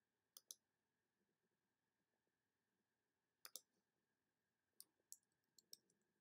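Faint computer mouse clicks: a quick pair near the start, another pair about halfway through, and a few single clicks near the end, while a web page is being scrolled.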